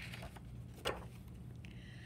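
A page of a picture book being turned: a soft, brief paper sound about a second in, over a low steady room hum.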